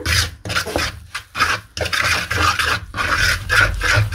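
Wooden stirring stick scraping and rubbing through thick, wet corn-flour and yogurt batter in a bamboo bowl. It makes a run of uneven strokes, about two a second.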